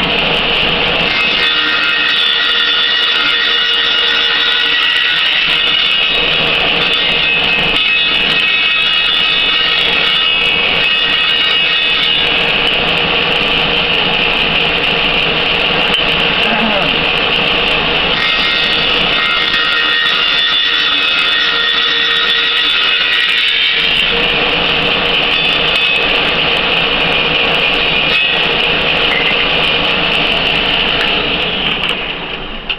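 Small table saw running continuously with a loud, steady high-pitched whine from its motor and blade.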